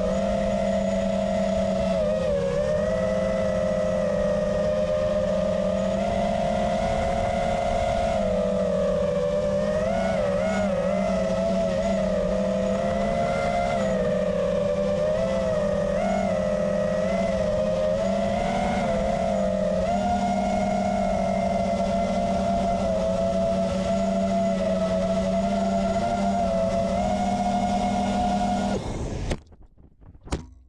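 FPV quadcopter's brushless motors and propellers whining steadily from on board, the pitch wavering up and down with the throttle. About a second before the end the motor sound cuts off abruptly as the radio link drops out and the quad failsafes.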